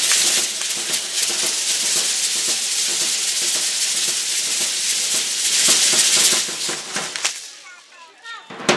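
Many matachines dancers' hand rattles (sonajas) shaking together in a dense, continuous rattle, fading out near the end.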